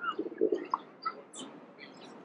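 Birds chirping in short, scattered calls, with a low call a quarter of a second in.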